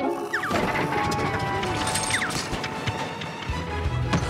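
Cartoon crash sound effects: a sharp impact, then a long noisy clatter with scattered knocks and a couple of quick falling whistles, over background music.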